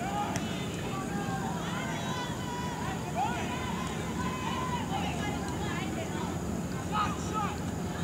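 Distant shouts and chatter of soccer players and spectators over a steady outdoor background noise.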